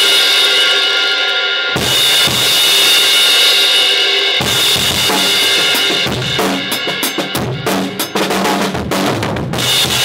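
Drum kit with a new 20-inch Zildjian Thin Dark Crash: the crash is struck and left ringing in long washes, hit again about two seconds and four and a half seconds in, then a faster run of kick, snare and cymbal strokes. The sound is distorted, the microphone gain set too high.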